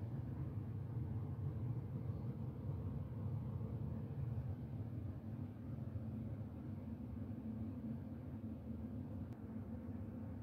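Small electric motor and gears of a vintage animatronic porcelain doll running, a steady low hum as the doll moves its arm.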